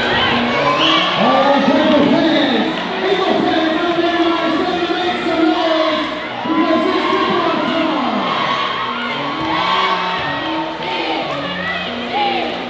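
A group of girls' voices shouting and cheering together over music, with crowd noise in the gym.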